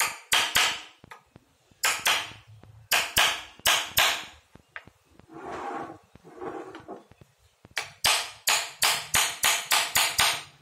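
Hammer striking a steel punch on a thin German silver sheet, chasing the metal into a carved wooden relief: sharp metallic taps with a short ring. The taps come in irregular clusters, pause midway, then run steadily at about two to three a second near the end.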